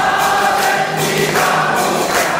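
Congregation of devotees singing an aarti hymn together, with a regular percussive beat about twice a second.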